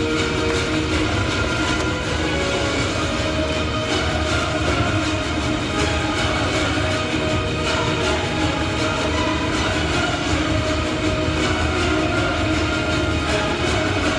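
Loud, dense backing music for a stage act, played over a PA system and holding steady without breaks.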